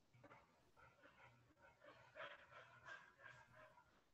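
Near silence: faint room tone with faint, indistinct sounds through it.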